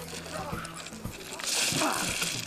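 A man thrown down onto a foam mattress in a wrestling body slam, landing with a short loud rush of noise about one and a half seconds in, with a man's shout of "Ah".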